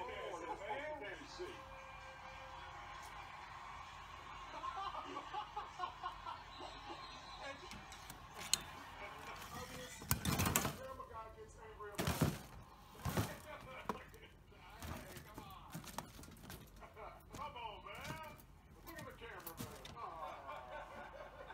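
Faint television commentary in the background, with a few sharp knocks and rattles about halfway through.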